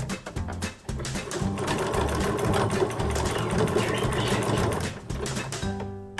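A white home electric sewing machine stitching fabric, running steadily from about a second in and stopping shortly before the end. Background music with a plucked bass line plays throughout.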